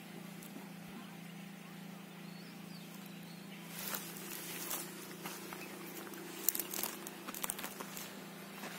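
Plastic grafting strip crackling and rustling in irregular short clicks as it is wound and pulled tight around a plum graft union, starting about halfway through, over a steady low hum.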